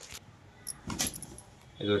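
A few short crinkling rustles and clicks of clothes in plastic packaging being handled, the loudest about a second in.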